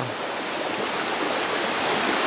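River water rushing over rocks, a steady hiss of running water.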